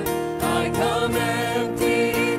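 A small worship vocal group of mixed men's and women's voices singing a slow hymn in harmony over instrumental backing, sustaining and changing notes.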